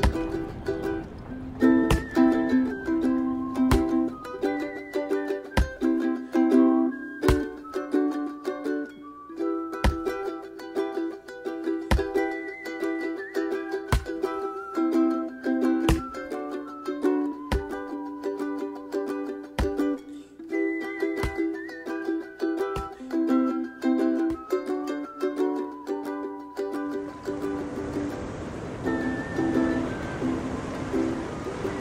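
Ukulele music: a plucked folk-style tune with chords, marked by a sharp knock about every two seconds. Near the end the tune fades out under a steady rushing noise.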